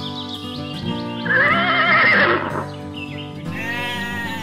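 Background music with a horse whinny laid over it about a second in, the loudest sound, wavering in pitch for about a second. A shorter bleat-like animal call begins near the end.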